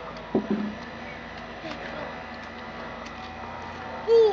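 A brief voice sound about half a second in, short and wordless, over a steady quiet outdoor background with a few faint small ticks.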